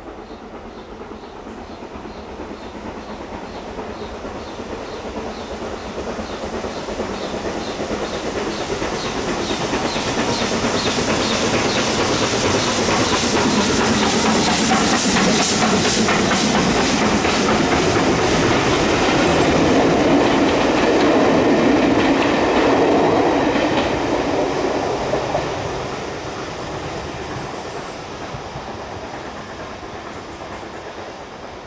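BR Standard Class 4MT 2-6-4 tank locomotive No. 80078 and its coaches crossing a girder bridge, the wheels clattering rhythmically over the rail joints. The sound builds up, is loudest through the middle as the train passes, and fades away near the end.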